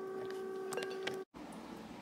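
A steady hum with a few faint clicks, then an abrupt cut a little over a second in to quieter room tone.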